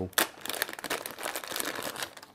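A thin plastic packaging bag being opened and handled, crinkling in quick irregular bursts, with a sharp crackle about a quarter second in, as a coiled cable is drawn out of it.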